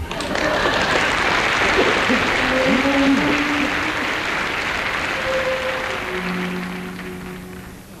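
Studio audience applauding over the opening signature tune of a radio comedy show. The applause dies away steadily toward the end.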